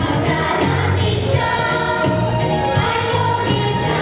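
A children's choir singing with instrumental accompaniment, the voices holding long notes over a steady low bass line.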